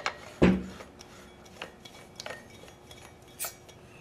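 Compressed-air tank being screwed onto a Tippmann A5 paintball marker to air it up: a thump about half a second in, then light metallic clicks and ticks, and a brief high hiss near the end as the air comes on.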